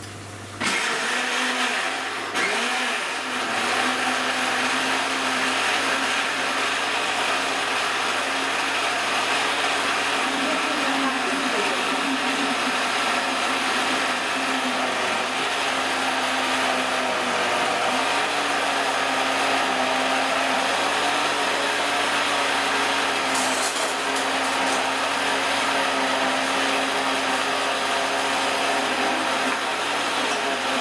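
Electric countertop blender starting about half a second in and running steadily at full speed, puréeing lemons, mint and water.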